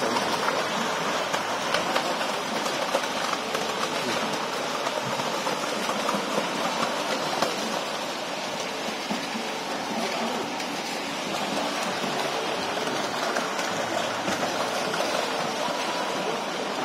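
A dense shoal of large fish thrashing and splashing at the water's surface, making a continuous churning patter of many small splashes.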